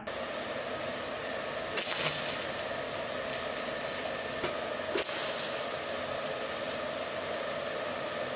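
Everlast TIG welder tacking a steel shifter part: a steady hum with two bursts of arc hiss, a short one about two seconds in and a longer one about five seconds in.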